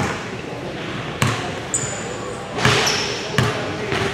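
A basketball bouncing on a hardwood gym floor: four sharp, echoing bounces at uneven spacing, with two brief high sneaker squeaks on the court near the middle. Voices chatter in the background throughout.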